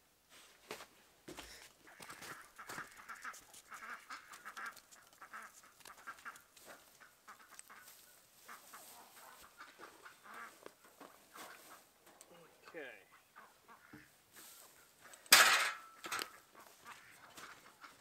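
Chickens clucking in a farmyard, with scattered small clicks and knocks from handling a roll of wire fencing. About fifteen seconds in comes one loud, harsh burst of noise lasting under a second.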